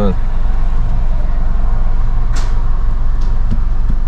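Idling car engine heard from inside the cabin: a steady low rumble, with one sharp click about two and a half seconds in.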